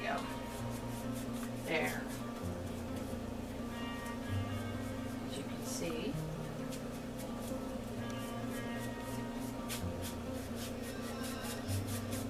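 Background music with steady held notes, under light taps and brushing of a paintbrush working the edge of a small stretched canvas.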